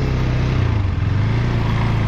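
KTM 390 single-cylinder motorcycle engine running at low revs as the bike rolls slowly, heard from the rider's seat with steady road and wind noise.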